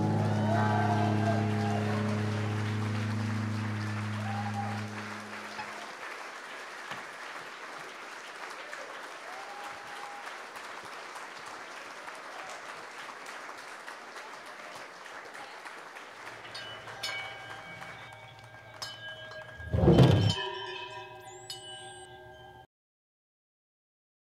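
A guitar's final chord rings out for the first five seconds or so over audience applause, which fades slowly. Later a low steady hum comes in, a loud thump sounds near the end, and the recording cuts off abruptly.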